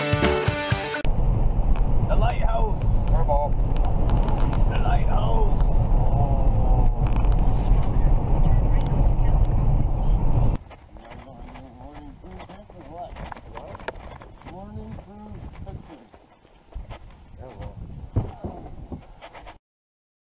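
A music cue ends in the first second. Then a loud, steady low rumble on the phone's microphone, with voices faint beneath it. About ten seconds in it cuts to much quieter, distant talking among people on the shore.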